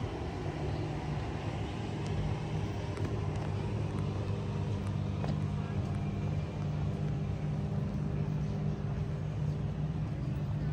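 Steady low engine hum of motor traffic, running evenly with no clear rise or fall, under a faint outdoor background.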